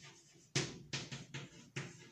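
Chalk writing on a chalkboard: four short chalk strokes in quick succession, starting about half a second in.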